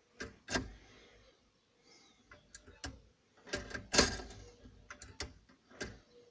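A series of sharp mechanical clicks and knocks from a DIY electric steering wheel clutch being engaged and released by hand. The clicks are irregular, with the loudest cluster about four seconds in.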